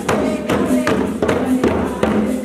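Papuan tifa hand drums beaten in a steady rhythm of about two to three strokes a second, with a group of voices chanting over them for the Biak Wor dance.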